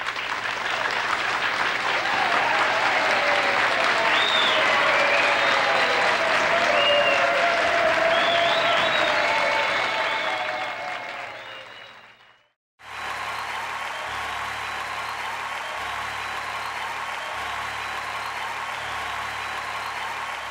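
Studio audience applauding and cheering at the end of a song, the applause fading out about twelve seconds in. Then a steady, quieter stretch of background music with a low pulse repeating every second and a half or so.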